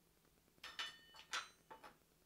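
Stainless steel measuring cup clinking against metal, four light clinks each with a short metallic ring, as it is set down beside metal measuring spoons.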